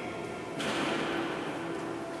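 Carillon bells ringing, their steady overlapping tones echoing in a large stone church. About half a second in, a sudden rush of hissing noise cuts in over the bells and fades within a second.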